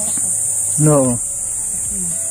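A steady high-pitched insect drone, with one short voiced sound from a person, falling in pitch, about a second in.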